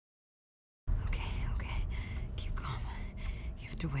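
Dead silence for nearly a second, then a hushed whispering voice starts abruptly over a steady low rumble.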